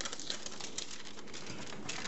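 Blue painter's tape and tracing paper being peeled up off a paper pattern: a run of light, irregular crackles and ticks.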